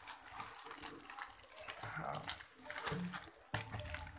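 Plastic courier mailer bag crinkling and rustling in irregular bursts as it is handled and opened.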